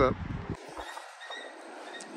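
Autorack freight train rolling slowly past, heard faintly as a soft hiss with thin, steady high tones. A low wind rumble on the microphone cuts off suddenly about half a second in.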